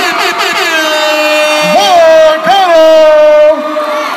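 A person's voice screaming one long, loud held note in excitement, pitch swooping up briefly twice near the middle, cutting off shortly before the end, over crowd noise.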